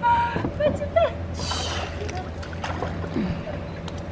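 Pool water sloshing and splashing as a baby is dipped and lifted by his feet, with a hissy splash about one and a half seconds in, over adults' laughs and short exclamations.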